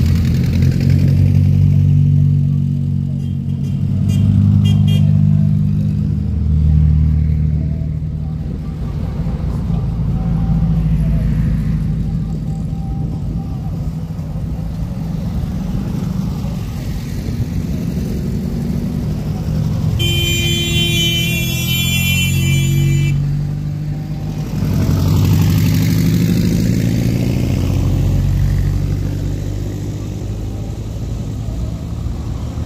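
A procession of dune buggies driving past one after another on a dirt road, the engines swelling and fading as each goes by. A high, steady tone sounds for about three seconds, about two-thirds of the way through.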